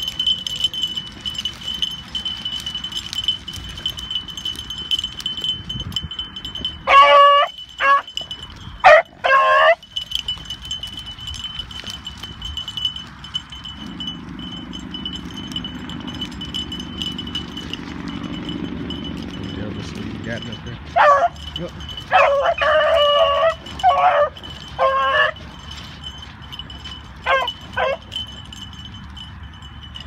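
Beagles baying while running a rabbit, in separate groups of short calls: two about seven and nine seconds in, and a longer spell from about twenty-one to twenty-eight seconds. A steady, thin high-pitched tone sounds underneath.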